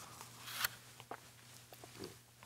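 A man taking a sip from a foam cup: a soft slurp about half a second in, followed by a few faint small clicks, over a faint steady hum.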